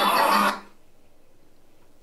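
A looping Halloween sound effect plays loud and rough through a Pyle Pro PCA3 amplifier and salvaged stereo speakers. It cuts off about half a second in as the motion sensor switches the circuit off, leaving only faint room hum.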